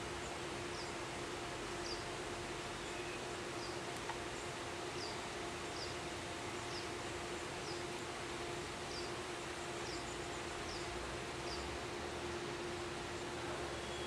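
Outdoor background with a steady low hum and a short, high chirp repeating about once a second.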